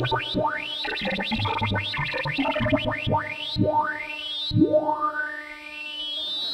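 Merge sort sonified as synthesized beeps whose pitch follows the height of the bars being compared. The beeps run as rapid rising sweeps that grow longer as sorted runs are merged, the last one rising for about a second and a half.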